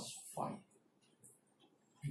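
A man says one word, then near silence with a short, faint scratch of a marker on a whiteboard about a second in.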